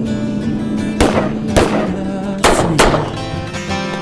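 Trailer music with a held note, cut through by four sharp gunshots with ringing tails: two about a second and a half-second apart early on, then a closer pair around two and a half seconds in.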